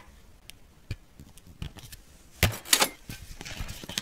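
Hard plastic toy gun parts clicking and knocking as they are fitted together. A few light clicks come in the first second, and a louder cluster of snaps and clatter comes about two and a half seconds in.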